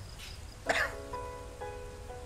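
A single short cough about two-thirds of a second in, over soft background music with held notes.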